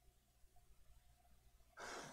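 Near silence with a faint low hum of room tone. Near the end, a short breath into the microphone just before a man starts to speak.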